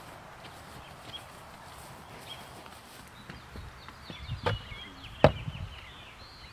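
A horse's hooves stepping up onto the wooden top of a tractor-tyre platform: dull hoof thuds, then two sharp knocks about a second apart near the end, the second louder.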